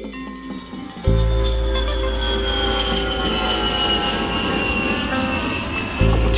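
Jet plane flying over: a high engine whine slowly falling in pitch, over sustained music with a deep bass note that cuts in about a second in.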